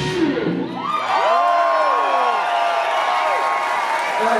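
A live rock band's final chord stops within the first second, and the audience cheers and whoops, many voices rising and falling in pitch over each other.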